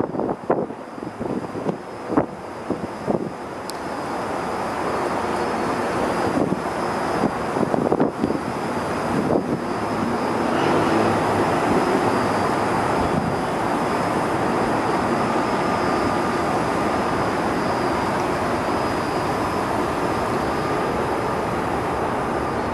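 Steady outdoor city roar heard from a high rooftop, a dense rushing noise with no clear pitch. It swells over the first ten seconds or so and then holds level, with a few sharp knocks in the first few seconds.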